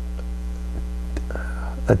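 Steady low electrical mains hum, a constant buzz with no change through the pause, and a short click near the end.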